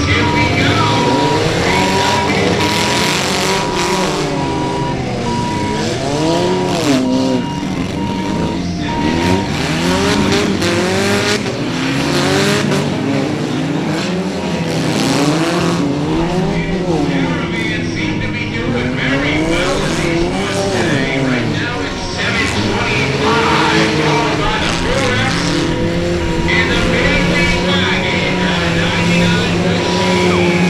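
Several old street-car engines revving hard and dropping back again and again as a field of battered cars races and shoves across a muddy dirt track. A steady high tone sounds through the first nine seconds or so.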